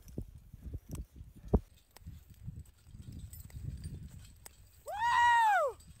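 Ice axes and crampons striking a steep snow and ice slope as a climber moves up: a few separate sharp knocks, the loudest about one and a half seconds in, over a low rumble of movement. Near the end a person gives a long whooping "woo!" that rises and falls in pitch.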